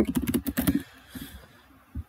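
Computer keyboard typing: a quick run of keystrokes in the first second, then a few scattered clicks as the word "studying" is typed.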